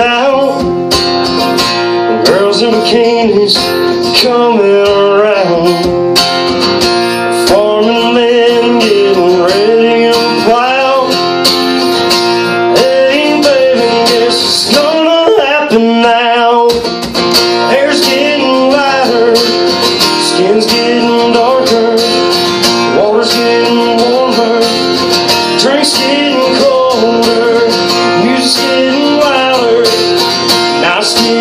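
A man singing a country song live while strumming a steel-string acoustic guitar, with the voice held in long, sliding notes over steady chords. There is a short break in the strumming about seventeen seconds in.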